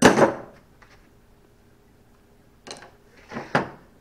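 Handling and knocking noises: a loud, short scuffing rush at the start, then quiet, then a few short knocks and a sharp click near the end.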